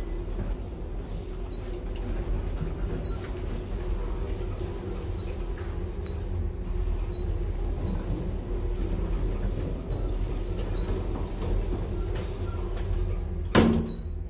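Inside a traction elevator car: a steady low hum with faint, scattered light ticks, and one sharp knock shortly before the end.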